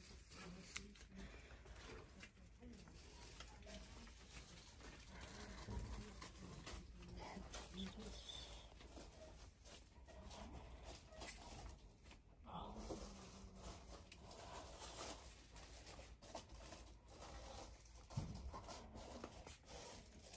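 Faint, quiet store ambience with indistinct distant voices and a few light clicks.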